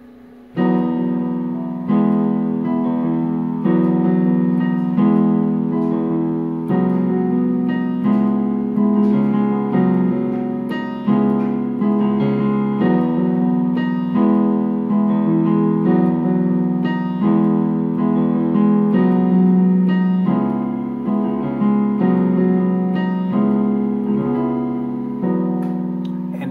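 Yamaha Portable Grand digital keyboard playing a slow neo-soul chord progression in a piano voice: left-hand octaves under right-hand three-note chords, starting about half a second in, with a new chord struck about every second and each one left ringing.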